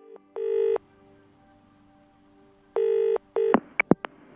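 Telephone ringing with an electronic ring tone: one ring, then about two seconds later a quick double ring that is cut short. A few sharp clicks near the end follow as the call is picked up.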